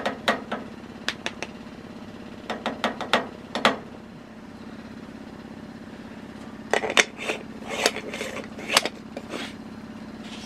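Light clicks and taps of a glass jar against an aluminium moka pot as ground coffee is tapped into its filter basket, over a steady low hum. About seven seconds in, a louder run of metal clinks and knocks comes as the pot is handled and lifted off the steel stove top.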